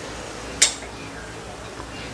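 Metal tongs clinking once against a stainless steel pan, a short sharp click about half a second in, over a faint steady background.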